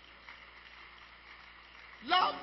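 Faint, steady background hiss with low room noise: a pause with no distinct sound event.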